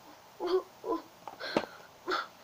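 A girl says "twenty", then makes two short breathy vocal sounds while grimacing.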